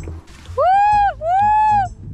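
A person's two long, loud hooting calls, each rising and then falling in pitch. It is a 'forest voice' call pushed from the diaphragm, used to signal companions in the woods.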